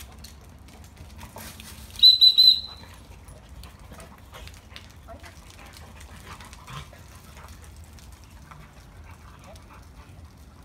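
Dog-training whistle blown in three short, equal-pitched pips about two seconds in, the pattern of a gun dog recall signal. Faint scattered ticks follow as the Labrador comes back across the pavement.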